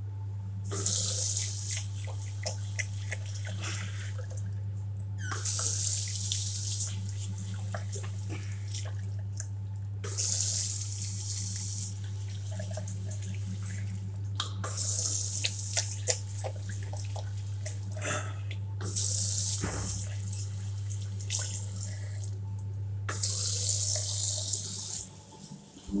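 Water running from a commercial sink tap into a ceramic basin in six short spurts, each a second or two long and about four to five seconds apart, over a steady low hum.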